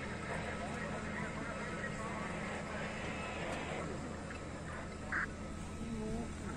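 Faint, indistinct voices over a steady low hum.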